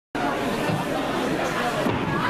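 Chatter of a small group of people talking at once, a steady babble of voices.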